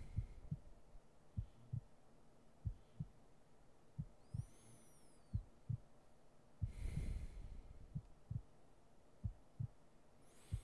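Slow heartbeat: paired lub-dub thumps repeating a little more than once a second. There is one long breath about seven seconds in.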